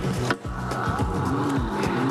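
Background music, a steady bed with a held high note coming in about half a second in.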